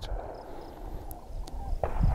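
Quiet outdoor background noise in a pause between words: a low, steady hiss with a few faint, short, high chirps and one faint click about a second in.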